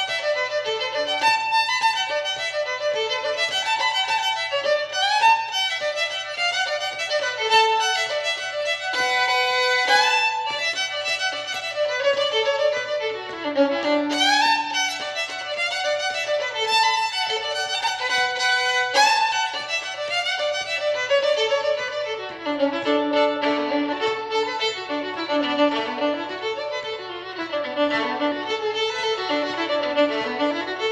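Solo fiddle playing a D-major breakdown melody: a continuous run of quick bowed notes rocking up and down without a break.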